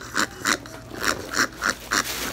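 Wheezing, breathless laughter: a rapid run of short wheezes, about four a second.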